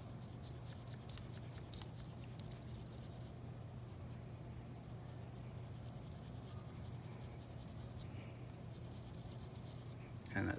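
Pastel stick rubbed firmly back and forth on paper, a faint run of short scratchy strokes, over a steady low hum.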